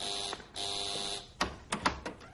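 Electric doorbell buzzer pressed twice: a short buzz, then a longer one. A few sharp clicks follow near the end.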